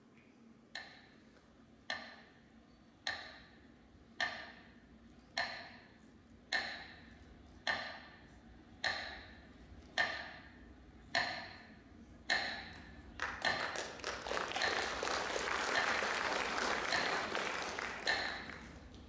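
A metronome clicking slowly and evenly, about once a second, each click ringing out with reverberation: the radio metronome of besieged Leningrad. Audience applause swells up about thirteen seconds in and carries on under the clicks.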